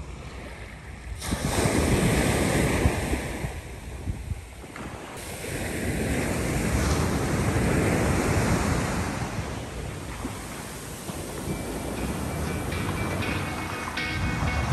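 Surf washing onto a sandy beach, with wind buffeting the microphone. The noise swells and eases twice, strongest about one to four seconds in and again in the middle.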